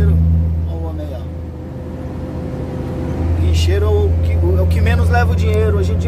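Truck engine droning steadily inside the cab while driving, easing off about a second in and picking up again about three seconds in. A man's voice talks over it in the second half.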